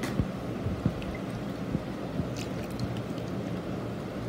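A spoon stirring thick, wet dosa batter in a bowl: soft squelching scrapes with a few light clicks of the spoon against the bowl.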